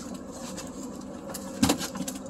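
A single sharp knock about one and a half seconds in as the landing net holding the fish is set down against the boat, over a faint steady hum.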